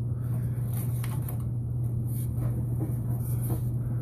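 A steady low hum with a few faint clicks scattered through it.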